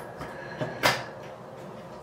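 A faint tap, then one sharp clack a little under a second in: a hard object knocked or set down on a bathroom counter.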